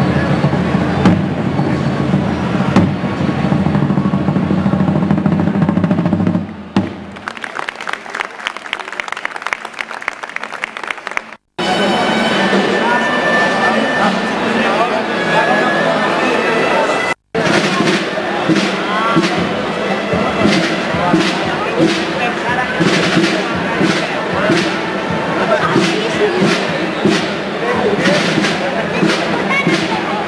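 Voices mixed with music, cut off abruptly twice, with a regular beat running through the last part.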